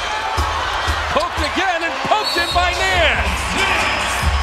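Televised basketball game sound: arena crowd and a voice over it, with a ball bouncing on the hardwood court.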